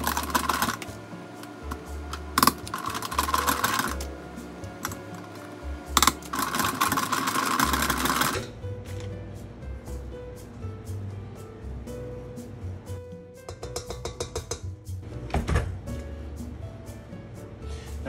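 A hand-cranked metal food mill grinding cooked potatoes through its perforated plate: rapid, rhythmic metallic scraping and clicking for the first half, then quieter, sparser scrapes as the purée is scraped off the underside of the mill. Background music plays throughout.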